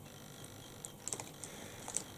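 A few faint, light clicks and taps, mostly about a second in, as makeup brushes are handled in fingers with long acrylic nails.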